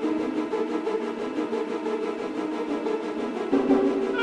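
Symphonic music for a virtual orchestra, composed and played on a computer and sound synthesizer. Held chords in the middle register pulse quickly and evenly, and a new chord comes in near the end.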